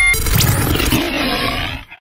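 Station logo sting: after a short chime, a big-cat roar sound effect that fades out just before the end.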